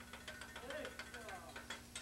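Teppanyaki chef's metal spatula and utensil tapping and scraping on the hibachi griddle: a run of faint, quick clicks, with a faint voice underneath.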